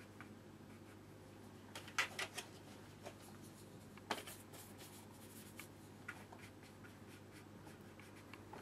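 A watercolour brush being worked in a paint palette: a few light clicks and scrapes, a small cluster about two seconds in and a sharper tap about four seconds in, over a low steady hum in a quiet room.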